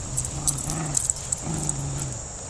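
Puppies growling low in three short bursts while tugging a deflated plastic beach ball between them, with sharp crinkles of the plastic in between.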